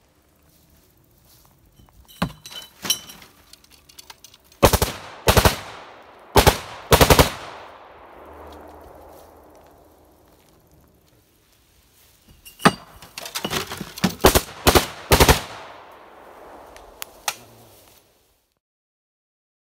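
AKS-74U short-barrelled Kalashnikov (5.45×39mm) firing short automatic bursts, in two groups: the first about five to seven seconds in, the second from about twelve to fifteen seconds. Each burst is followed by a trailing echo.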